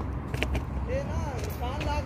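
Distant voices talking over a steady low rumble, with a few short clicks.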